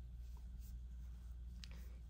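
Faint rustle and scrape of yarn being worked with an aluminium crochet hook while making a double crochet stitch, over a low steady hum.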